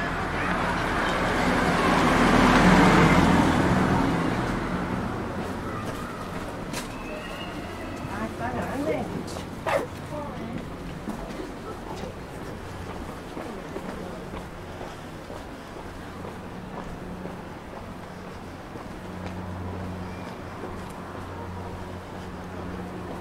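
Street ambience: a vehicle passes on the road, its noise swelling and fading within the first few seconds. Over steady low traffic hum, passers-by's voices come briefly a little later, with a sharp click about ten seconds in.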